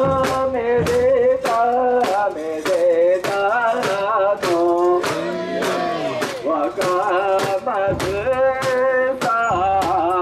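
Mikoshi carriers' chant led by a man singing long-drawn notes through a megaphone, over sharp clacks that keep a steady beat about twice a second.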